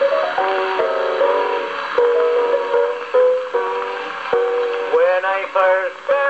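Piano introduction of a 1901 acoustic disc recording played through a Victor Type III horn gramophone, the sound thin with no low bass and a few faint clicks. A man's singing voice comes in near the end.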